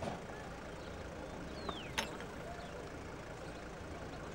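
Outdoor street background with a low, steady vehicle rumble. A single sharp click comes about two seconds in, just after a short falling chirp.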